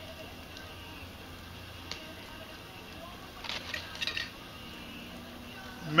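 Low steady background hiss with a faint click about two seconds in and a short run of light clinks and rustles between three and a half and four seconds in, from a glass beer bottle being picked up and handled.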